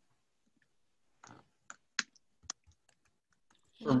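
Computer mouse clicking: a handful of short, sharp, quiet clicks between about one and two and a half seconds in, as the shared slide is advanced.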